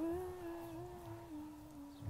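Soft wordless humming: a few long held notes that step up, then down, fading gradually.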